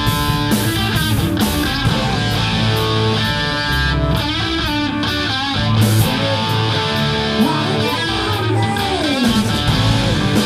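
Live rock band playing an instrumental passage: electric guitars over bass and drums. Near the end a guitar line slides down in pitch.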